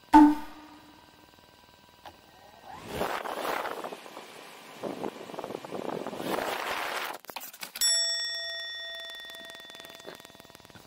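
A sharp ding at the very start and a bell-like ding about eight seconds in that rings and fades slowly over two seconds. Between them comes a stretch of rushing noise as the DJI Phantom 4's propellers spin close to the microphone.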